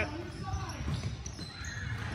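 Basketball play in a large gym: a ball bouncing and players moving on the hardwood court, with faint voices in the background. No single sound stands out.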